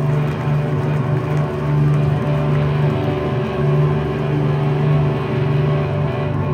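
Live instrumental rock band playing sustained electric guitar and bass tones that swell and fade every second or two, heard loud from the audience on a phone's microphone.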